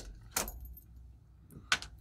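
A few short, light clicks and knocks of a steel dive watch and digital calipers being handled and set down on a wooden tabletop.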